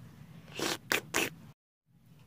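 Three quick scratchy rustles of cloth and plush being handled close to the microphone, cut off by a moment of dead silence at an edit near the end.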